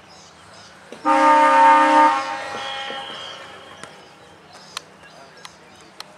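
Ground siren sounding for about a second, then dying away over the next two, signalling the start of play in an Australian rules football match.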